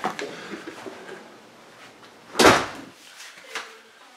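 A house door pushed open by hand, with a click of the latch at the start, then a louder brief thump about two and a half seconds in and a small tap near the end.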